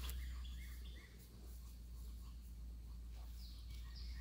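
Faint outdoor ambience: birds chirping here and there over a steady low rumble.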